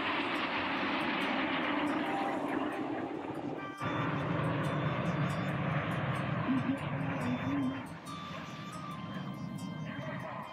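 Jet engine noise from a formation of BAE Hawk T1 jets flying past: a loud, steady rush with a sudden break about four seconds in. It eases off a little near the end.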